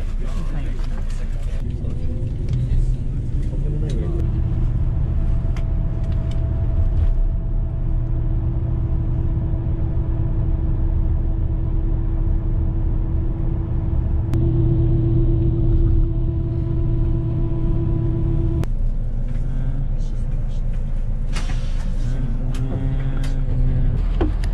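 Steady low rumble of a coach bus's engine and road noise heard from inside the cabin. A steady droning tone joins it through the middle and stops abruptly about eighteen seconds in, and voices are heard at the start and near the end.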